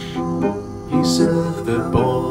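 Grand piano playing a song accompaniment of repeated chords, with a man singing the lyric over it.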